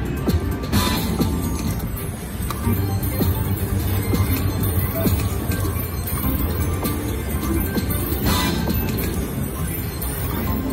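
Casino floor din of electronic slot-machine music and jingles with background chatter, as a three-reel Wheel of Fortune Gold Spin Deluxe slot spins and stops its reels. Two short sharp bursts stand out, about a second in and near the end.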